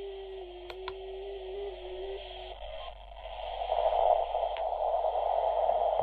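Receiver audio from a uSDX/uSDR HF QRP SDR transceiver's built-in speaker on the 20 m band in CW mode: a hiss of band noise with a steady low tone for the first two and a half seconds. Two faint clicks come about a second in, and the noise swells louder from about three seconds in, a noise floor that is all over the place.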